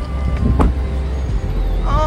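Low, steady rumble of idling cars and traffic, with a single sharp knock a little over half a second in.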